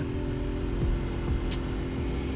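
Motorcycle engine running steadily at cruising speed, with wind and road noise on the onboard camera's microphone.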